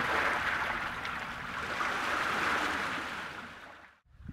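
Sea water washing against the shore and pier pilings: a steady hiss that swells and then fades out near the end.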